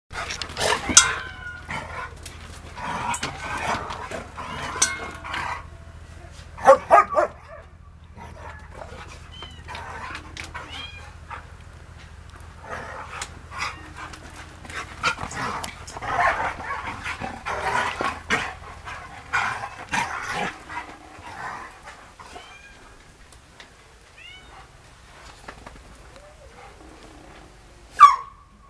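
Dogs vocalising in short calls amid scuffling and knocking noises, loudest near the start and about seven seconds in.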